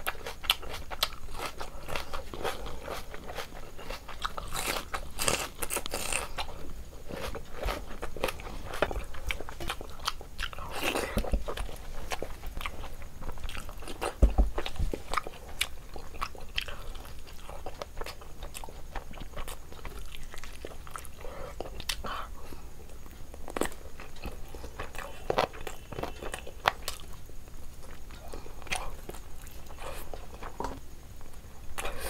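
Close-miked mouth sounds of a person eating curry, meat and rice by hand: wet chewing and biting with many small clicks and smacks.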